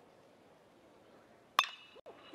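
Near silence, then about a second and a half in a single sharp metallic ping with a short ring: a metal college baseball bat hitting the pitch for a ground ball.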